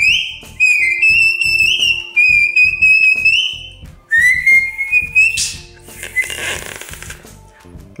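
Shepherd's sheepdog whistle held in the mouth, blown in about four high-pitched blasts over the first five seconds, several stepping or sliding upward in pitch. Then a breathy, crackling rush of air with only a faint tone follows. It is a beginner practising herding whistle commands.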